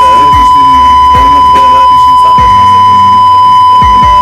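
A loud steady high-pitched beep tone held without a break, over background music with deep bass drum hits every second or so.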